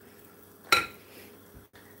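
A batter scoop set back in a mixing bowl with a single sharp clink about two-thirds of a second in, followed by a softer knock.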